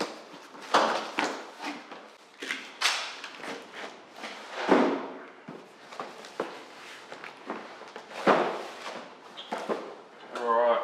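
Cardboard box being opened and unpacked by hand: packing tape tearing, cardboard flaps scraping and knocking, and the packed contents rustling as they are handled. The sounds come as irregular scrapes and knocks, the loudest about a second in, near three and five seconds, and again past eight seconds.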